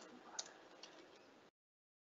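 Near silence with a few faint clicks of computer keys being typed. The sound cuts out completely about a second and a half in.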